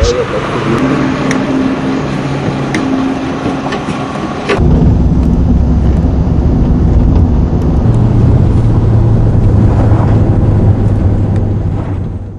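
Running noise of a motor vehicle heard from inside: a steady engine drone and road rumble, which gets louder and deeper about four and a half seconds in.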